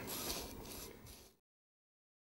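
Small paintbrush sweeping loose grains of model railway ballast along 00 gauge track, a soft scratchy rubbing that fades and cuts off about a second and a half in.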